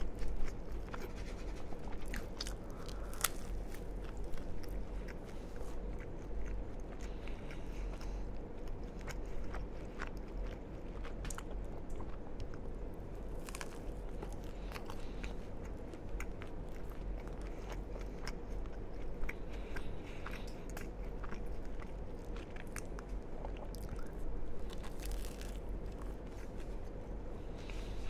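Close-miked biting and chewing of a toasted sandwich, with crisp crunches and many small, sharp mouth clicks scattered throughout, over a steady low hum.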